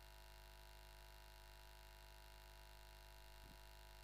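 Near silence: a faint steady hum with no other sound.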